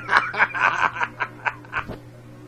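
A man snickering in a quick run of short, breathy bursts, about four a second, over a steady low electrical hum from the microphone.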